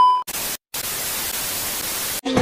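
A 'no signal' TV-static transition effect. A short high beep fades out right at the start, then steady television static hiss follows, with a brief dropout to silence about half a second in.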